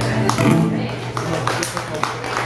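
Steel-string acoustic guitar played fingerstyle in the closing bars of a piece, notes ringing out, with several sharp percussive taps in the second half.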